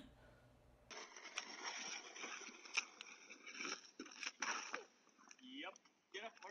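Faint, indistinct voices, with a few sharp clicks among them.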